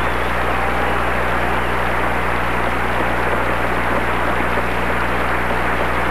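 Steady loud hiss and static with a low, even hum underneath, and no music or voice. This is noise on the audio track of an old videotape recording.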